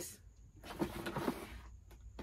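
Soft rustling and scraping of a cardboard box being opened and its contents handled, with a faint murmured voice.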